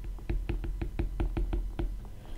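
Stylus tip tapping and clicking on a tablet screen while writing by hand: a fast, uneven run of light clicks, about five or six a second.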